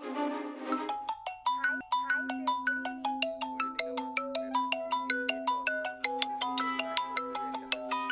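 Mobile phone ringtone: a quick marimba-like melody of short notes over one steady held low tone, starting just under a second in after a brief end of background music.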